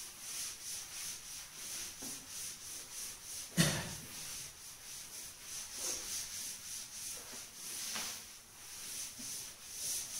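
Cloth wiping chalk off a chalkboard in quick, repeated rubbing strokes, with one sharp knock about three and a half seconds in.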